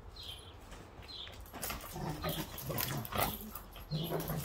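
A Rottweiler making short, low vocal sounds as it jumps up at a leash, with the sounds coming more thickly in the second half.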